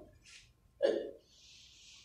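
A person's short throat or breath sound about a second in, between faint breaths.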